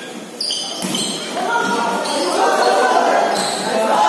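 A volleyball struck twice in quick succession, two sharp slaps about half a second apart early in a rally. Then a crowd of spectators' voices shouting, growing louder over the next few seconds.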